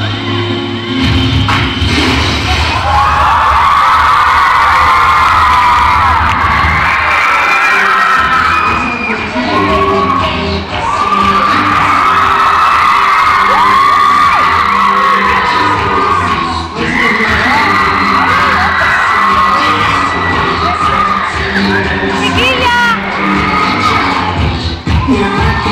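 Loud dance music with a heavy bass beat, with a large crowd of teenagers screaming and cheering over it from a few seconds in; the bass thins out about seven seconds in while the beat carries on.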